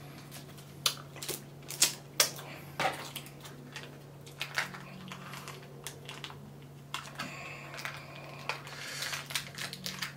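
Irregular sharp clicks and crinkles of small plastic dipping-sauce cups being handled and their stubborn peel-off lids picked at and torn open by fingers and teeth. The clicks come singly at first, then crowd into a dense crackle near the end, over a steady low hum.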